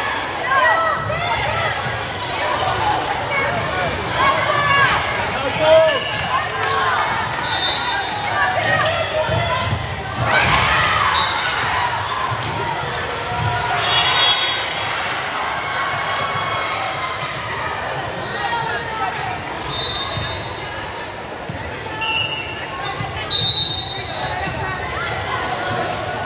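Indoor volleyball play in a large, echoing gym: players and spectators calling out and talking, with the ball struck and bouncing on the hardwood court and several brief high-pitched tones.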